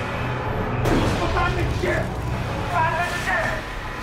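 Dramatic soundtrack: a steady low music drone under storm and crashing-wave noise, with voices shouting over it from about a second in.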